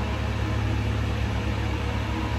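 Steady low hum with a soft, even hiss: the background noise of a small room, with no distinct event.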